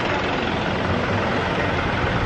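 A steady, even rushing noise, most likely a vehicle engine running nearby in a parking lot.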